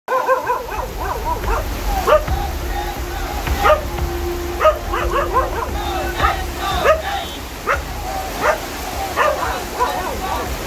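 Heavy rain falling, with short sharp cries repeating irregularly over it, about one every half second.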